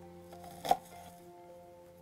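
One knife chop through a bunch of arugula onto a cutting board about two-thirds of a second in, over soft background music with long held notes.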